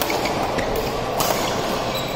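A badminton racket smacks a shuttlecock a little over a second in, sharp and short, over a steady, fairly loud noise that fills the hall.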